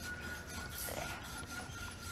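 Quiet room sound in a hall, with a faint steady high-pitched tone running through it.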